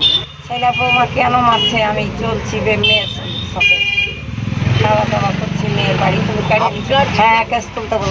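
Vehicle horns tooting briefly three times, the longest about four seconds in, over a low engine rumble and people talking.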